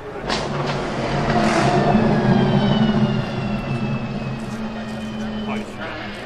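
De Tomaso P72 driving past. Its engine is loudest a couple of seconds in, with a high whine that falls in pitch as it goes by, then fades as the car pulls away.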